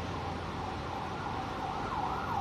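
An emergency-vehicle siren sweeping up and down in pitch, over the steady low noise of street traffic.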